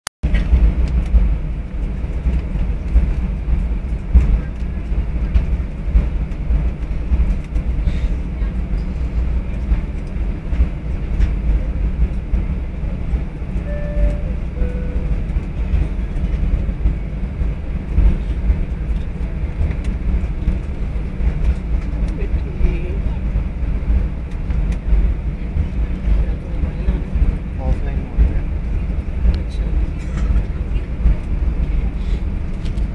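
Steady low rumble of an airliner cabin with the engines running ahead of takeoff.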